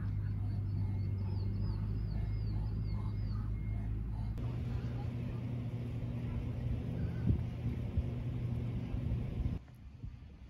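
Outdoor ambience with a steady low rumble and a run of short, repeated high chirps in the first three seconds. The background changes abruptly about four and a half seconds in and drops off suddenly near the end, at cuts between shots.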